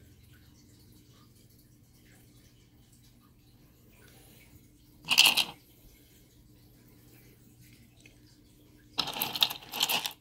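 Stones and artifacts clattering against each other and the ceramic bowl as a hand rummages through it near the end. There is a single sharp clack about halfway through, over a faint steady hum.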